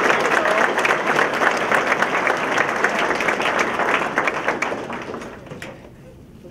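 Audience applauding, a dense run of many hands clapping that fades away over the last second and a half.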